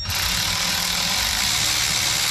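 Small cordless power driver running steadily, spinning down the nut on the V-band clamp that holds a wastegate to a turbo manifold; it starts suddenly right at the beginning.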